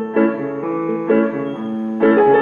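Grand piano playing slow, sustained chords, a new chord struck about every half second, in an instrumental passage of a live song.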